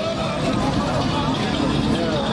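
Crowd chatter with a car on oversized rims rolling slowly past, its engine and tyres a steady low rumble underneath.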